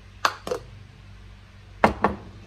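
Kitchenware being handled on a tray: two light knocks about a quarter and half a second in, then one loud clunk near the end.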